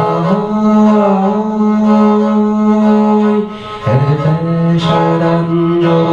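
Tuvan igil, a two-string bowed horsehead fiddle, played in long held notes rich in overtones. About three and a half seconds in, the sound dips briefly, then a new note comes in with an upward slide.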